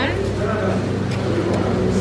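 A steady low hum with soft voices over it, and a few faint light clicks.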